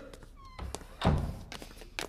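A brief high squeak, then dull low knocks, the loudest about a second in: a wooden door being shut.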